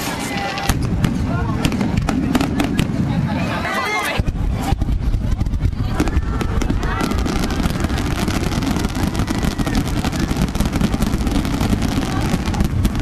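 Fireworks display: a rapid run of bangs and crackles that thickens into a dense, continuous barrage about four seconds in. Crowd voices are mixed in.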